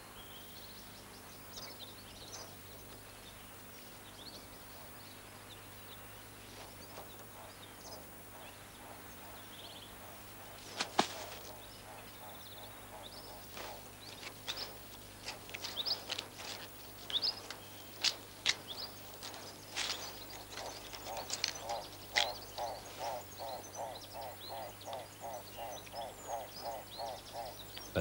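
Quiet grassland ambience with faint, scattered bird chirps. From about halfway there are sharp clicks and rustles, and in the last several seconds a rapid chirping call repeats about three times a second.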